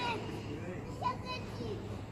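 Children's voices a little way off: a few short high-pitched calls, one at the start and two more about a second in, over a faint steady low hum.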